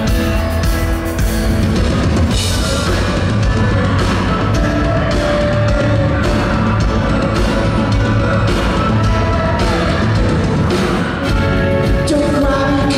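Rock band playing live, heard from the audience: drum kit with repeated cymbal hits over a steady bass guitar and guitars.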